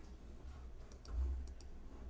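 A few faint clicks from computer use at the desk, about a second in and again around a second and a half, over a low steady hum.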